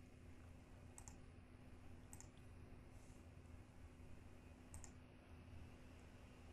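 Near silence with faint computer mouse clicks: three short double ticks, about a second in, a little after two seconds and near five seconds, over a faint steady low hum.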